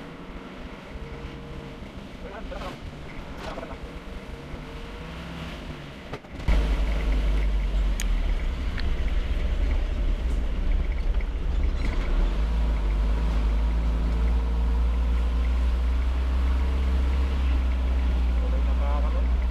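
A vehicle's engine and road noise while driving along a road. About six seconds in the sound jumps abruptly to a much louder, steady low rumble, which comes from an edit cut to another stretch of the drive.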